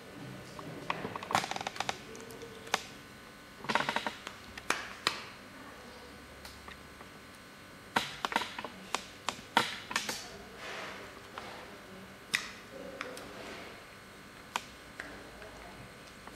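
Light plastic clicks and brief handling rustles as a clear disposable needle-tip cartridge is handled and pushed onto a microneedle RF handpiece. They come in irregular clusters: about a second in, near four seconds, and a busier run from about eight to ten and a half seconds.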